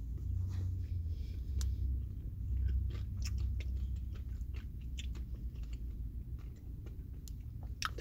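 A person biting into and chewing a strawberries-and-cream ice cream bar with crunchy bits in it, heard as many small irregular clicks and crunches over a low steady hum.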